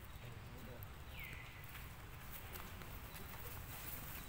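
A single short high whistled call that falls in pitch and levels off, about a second in, like a bird call, over a steady low rumble.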